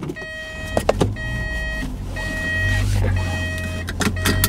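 A car's warning chime sounding four times in a row, each a steady pitched tone lasting just under a second, over the low rumble of the running car, with a brief rustle and click about a second in.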